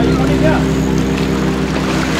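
A steady low engine drone holding one pitch, with brief voice sounds just at the start.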